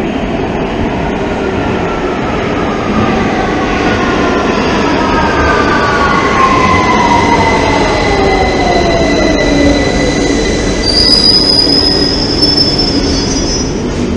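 A London Underground Victoria line 2009 Stock train pulling into the platform and braking: a heavy rumble with whines that fall steadily in pitch as it slows, and a high squeal near the end as it nears a stop.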